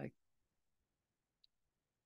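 Near silence in a pause in speech, with one faint tick about a second and a half in.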